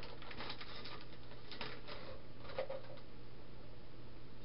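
Clear plastic packaging crackling and clicking in the hands as it is worked open and a PCI Express FireWire card is slid out, a few sharper crackles among soft scattered ones, over a low steady hum.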